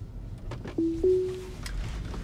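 Tesla Autopilot engage chime: two short electronic notes about a second in, the second slightly higher, held longer and fading away, over the low rumble of the car's cabin.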